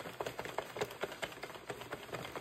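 Plastic circular knitting machine being cranked, its needles clicking quickly and unevenly as they knit round a row.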